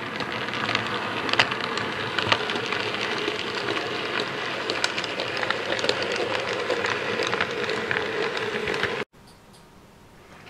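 Model Class 26 diesel locomotive running along model railway track with a train of tank wagons and a brake van: a steady motor hum with irregular clicks from the wheels on the rails. The sound cuts off suddenly about nine seconds in, leaving only a faint hum.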